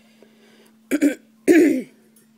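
A woman coughing twice, the second cough louder and longer, her throat irritated from sanding.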